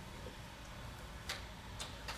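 Quiet room tone with two faint, short clicks, one past the middle and one near the end.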